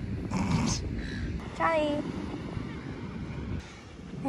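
Rottweiler puppy giving a short whine that falls steeply in pitch, about a second and a half in, over a low rumble of wind on the microphone.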